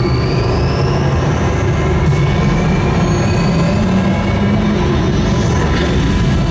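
Cinematic sound design from a product promo video: a loud, deep, steady rumble with thin whooshing tones that slowly rise in pitch.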